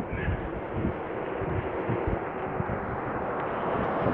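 Road traffic: a car on the multi-lane road, its tyre and engine noise growing slowly louder as it approaches. It is mixed with irregular low buffeting of wind on the phone microphone.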